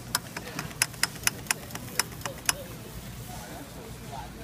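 Sharp metal clicks from a store's bulk coffee grinder as its levers are handled, about four a second for roughly two and a half seconds, then stopping, over a steady low hum.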